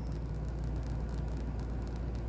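Steady low hum with a faint even hiss inside a parked vehicle's cabin.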